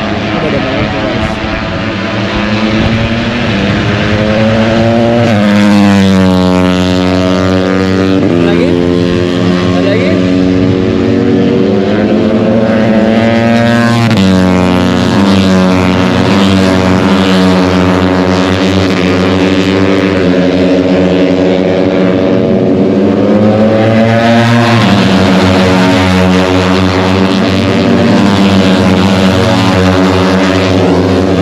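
MotoGP racing motorcycle engines at high revs during free practice. The pitch climbs to a new level several times, at about five, fourteen and twenty-four seconds in.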